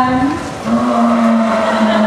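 Sea lion giving one long, steady call that begins about half a second in and is held for nearly two seconds.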